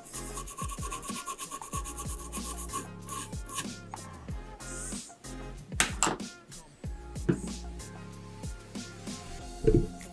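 A small bristle brush scrubbing rapidly back and forth over a circuit-board connector in the first few seconds, working isopropyl alcohol into the flux to clean it off, over background music. Two louder knocks come about six seconds in and near the end.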